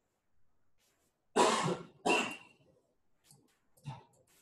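A man coughing twice, about two-thirds of a second apart, the second cough shorter.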